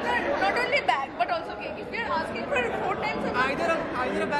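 Several people talking at once: overlapping chatter of voices in a hall, with no single voice standing out clearly.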